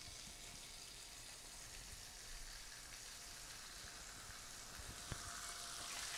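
Veal saltimbocca frying prosciutto-side down in hot butter in a nonstick pan: a faint, steady sizzle. About five seconds in there is a light tap and the sizzle grows a little louder as a second slice goes into the pan.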